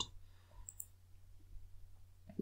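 A few faint computer mouse clicks over a steady low hum of room tone.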